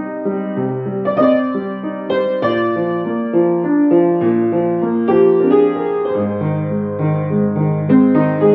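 Upright piano played with both hands: a melody over sustained chords, with low bass notes coming in about six seconds in.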